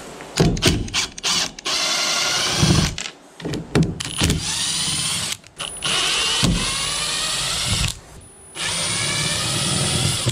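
Milwaukee M18 cordless impact driver backing screws out of a plywood crate lid, running in four bursts of one to two seconds each, its pitch rising within each run. A few short knocks come before the first run.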